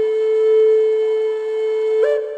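Flute music: one long, steady held note.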